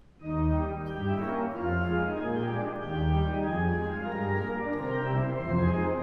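Pipe organ playing a stride-style passage: low bass notes alternating with chords. It starts about a third of a second in.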